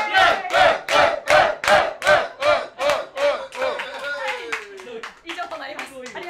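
A small group clapping in time, about two or three claps a second, with voices calling out together along with the beat. The clapping fades out about four seconds in, leaving scattered voices.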